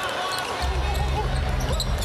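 Live arena sound of a basketball game: a steady crowd din with a ball being bounced on the hardwood court. A low rumble in the din swells about half a second in.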